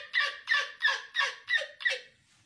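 A man laughing hard: a high-pitched laugh in quick repeated bursts, about three a second, each dropping in pitch, cutting off at the end.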